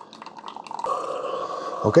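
Keurig K-Supreme Plus single-serve coffee maker at the end of its brew cycle: coffee trickling into a glass mug, joined about a second in by a steady hum from the machine until the brew stops.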